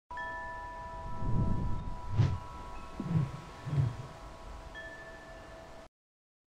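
Chime tones from an animated logo intro: several notes ring steadily together over a low rumble. Soft deep thumps come about two, three and four seconds in, and the sound cuts off suddenly just before the end.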